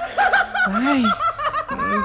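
A person laughing in a quick run of short chuckles.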